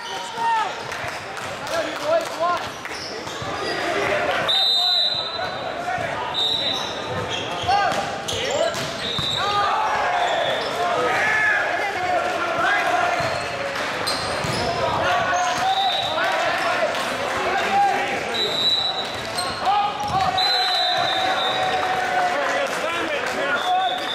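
Players' and spectators' voices in a large gymnasium during an indoor volleyball match, with the thuds of the ball being struck and bouncing on the hardwood court and a few short high-pitched squeaks.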